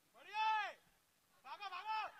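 A player's high-pitched shout on the cricket field, one drawn-out call that rises and falls in pitch, then a second shorter shout near the end: batsmen calling for runs while running between the wickets.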